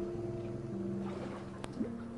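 Soft ambient music of sustained synthesizer notes that shift pitch twice, over gentle water lapping with small splashes and a light click about one and a half seconds in.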